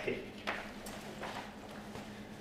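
Chalk on a blackboard: a few sharp taps and short scrapes as a line of symbols is written, over a faint steady room hum.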